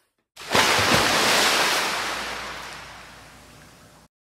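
Transition sound effect: a rushing noise like a breaking wave comes in suddenly about half a second in, with a low thud, and fades away over about three seconds before cutting off.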